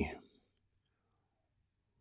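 A single short click about half a second in, then near silence.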